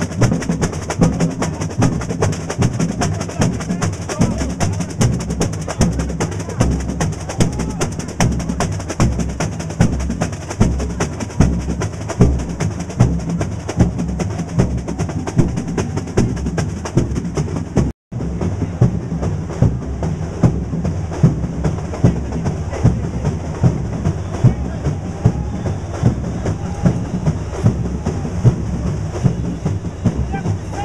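Samba school bateria (massed drum section) playing a dense, driving samba rhythm, with strong low drum beats under fast, crisp strokes. The sound drops out for a moment about two-thirds of the way through, then the drumming carries on.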